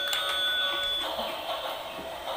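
Battery-powered toy race track set running: a held electronic tone that cuts off about a second in, over a steady whir.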